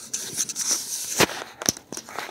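Close handling noise as a plush toy is rubbed against the microphone: rustling with scattered crackly clicks, and two sharper clicks in the second half.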